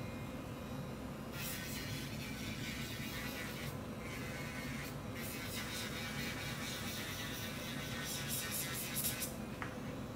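Portable electric nail drill running with a steady whine while its bit files the surface of dip powder nails in light passes. The passes add a gritty hiss that comes and goes, with short breaks, and it stops shortly before the end.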